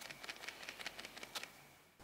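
A foil-and-plastic toy blind bag shaken by hand: the small pieces inside rattle faintly in quick, irregular clicks against the crinkly wrapper, dying away just before the end. The rattle shows loose parts inside, used as a clue to which figure the bag holds.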